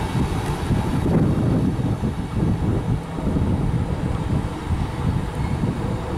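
A passenger train hauled by an E656 electric locomotive rolls away along the track, giving a steady low rumble of wheels on rails.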